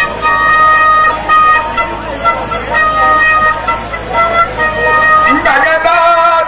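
A transverse flute playing a slow melody of held notes that step from pitch to pitch. Near the end a man's voice slides upward as he comes in.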